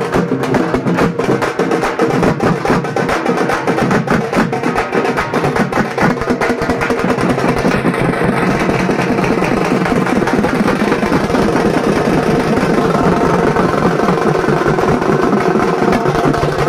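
Loud, fast drumming with dense rapid strokes, festival procession percussion music.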